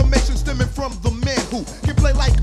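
A 1990 old-school hip hop track: a man raps over a beat with a deep, sustained bass line.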